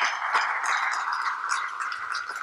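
Audience applauding: many people clapping together in a large hall, steady throughout.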